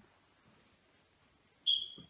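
Faint room tone, then near the end a single short, high-pitched chirp that holds one pitch and trails off.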